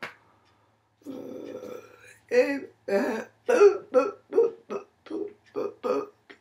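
A woman's voice making one drawn-out sound about a second in, then a quick run of short, rough syllables that form no clear words.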